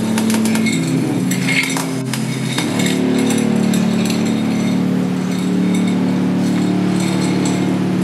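Live industrial dark-ambient noise from a pedal-and-electronics rig: a loud, steady low drone of several held tones, with scattered metallic clinks and crackles over it. About three seconds in, the drone shifts to a lower, fuller chord.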